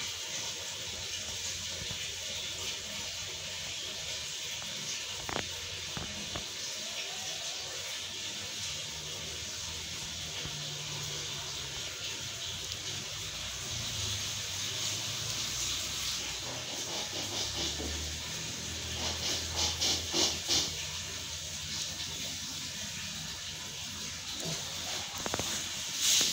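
A steady high hiss of background noise, with low rumbles and a quick run of clicks about two-thirds of the way through.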